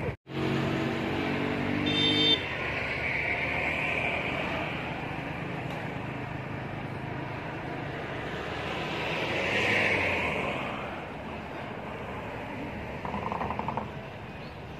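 Road traffic going by: a steady pitched tone holds for about two seconds near the start and stops suddenly, and a vehicle passes, loudest about ten seconds in.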